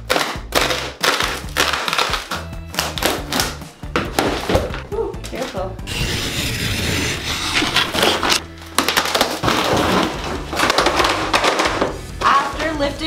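Glued-down plywood underlayment and linoleum being pried and torn up from a floor: repeated cracks, knocks and splintering, with background music.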